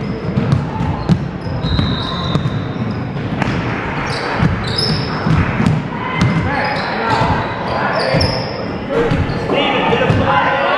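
Basketball being dribbled on a hardwood gym floor, with sneakers squeaking in short high chirps and voices calling around the court.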